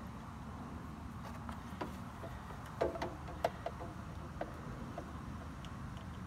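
Faint handling noise as the rubber oil-drain hose is fitted under a mower engine: a scattering of light clicks and taps, the loudest about three seconds in, over a steady low background hum.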